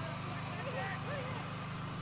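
Faint, distant shouts and calls of footballers on the pitch over a steady low hum.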